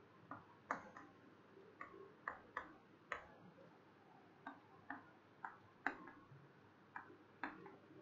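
Chalk tapping and clicking against a chalkboard while writing, about a dozen faint, sharp taps at irregular intervals.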